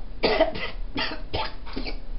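A woman coughing: about five short coughs in quick succession.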